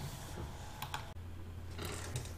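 A few faint, scattered clicks of computer keys over a low steady hum.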